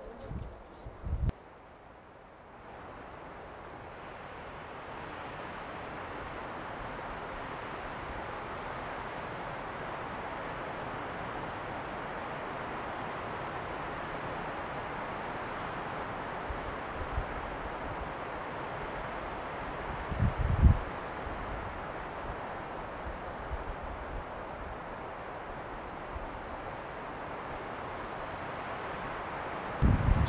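Steady outdoor wind, an even hiss that swells in over the first few seconds and then holds. About twenty seconds in, a brief low rumble of wind buffets the microphone.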